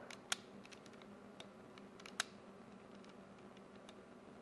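KYP self-adjusting wire stripper's jaws and spring mechanism clicking softly as the tool is worked in the hand: a few faint ticks, with two sharper clicks about a third of a second in and just past two seconds.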